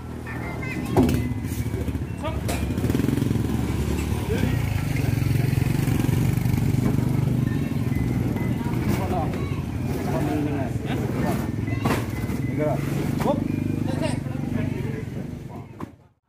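An engine running steadily at a low pitch, with a sharp knock about a second in, under the voices of men at work.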